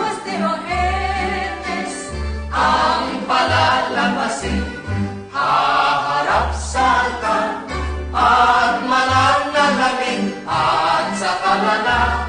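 A group of voices singing a festive song in unison over music with a steady, repeating bass line.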